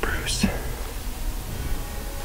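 A man whispering a few words at the very start, then only low background hiss.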